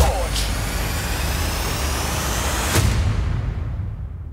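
Electronic transition sound effect: a hissing riser with tones gliding upward, a sharp hit about three seconds in, then a fade-out.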